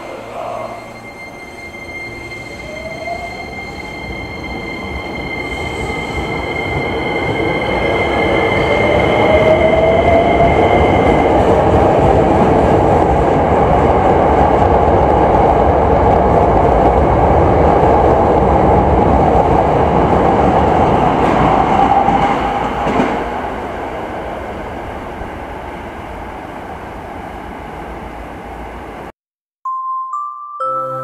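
A Hankyu electric train pulling away close alongside a station platform. Its traction motors whine upward in pitch as it speeds up, and a steady high tone sounds in the first ten seconds or so. The running noise builds to its loudest about ten seconds in, holds, then fades after about twenty-two seconds, and cuts to silence just before the end.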